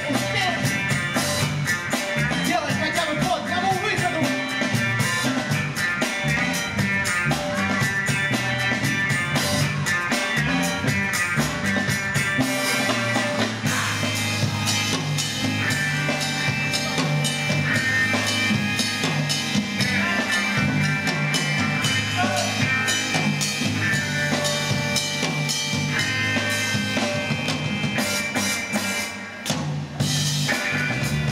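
Live band music: a drum kit keeping a steady beat under keyboard and low sustained notes. It drops out briefly near the end.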